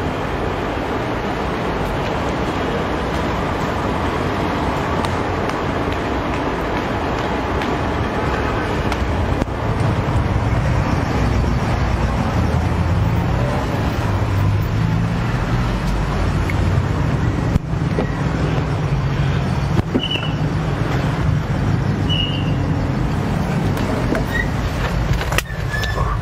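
Steady road-traffic noise, with a deeper vehicle rumble coming in about ten seconds in and a few light knocks.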